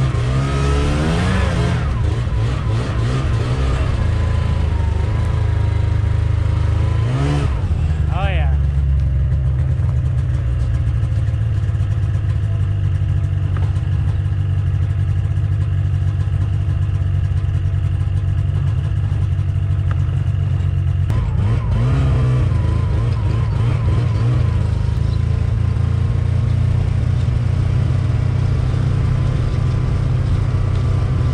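Ski-Doo Skandic snowmobile engine running while towing a loaded bob sleigh, revving up and down about a second in, again around seven seconds and once more past twenty seconds, and running steadily in between.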